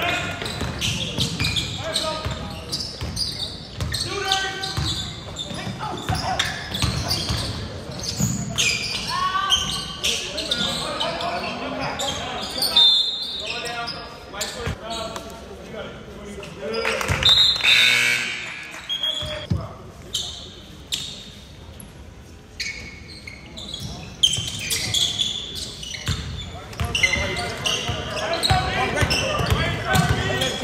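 Sounds of a basketball game in a large gymnasium: a basketball bouncing on the hardwood floor amid constant voices from players and spectators, all echoing in the hall.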